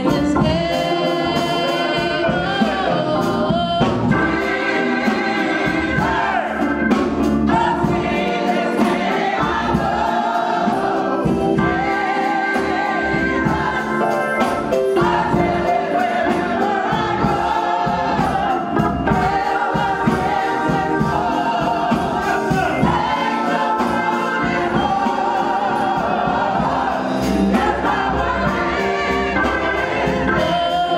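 Live gospel singing: a woman sings a solo into a handheld microphone over accompaniment, with other voices joining in like a choir. Her long held notes waver with vibrato.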